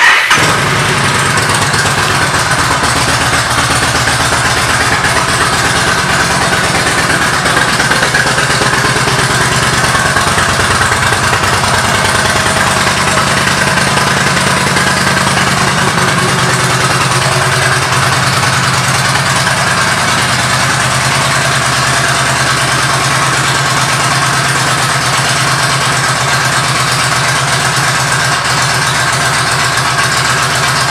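2015 Yamaha V Star 1300 Deluxe's V-twin engine, fitted with an aftermarket Cobra exhaust, starting abruptly and then idling steadily.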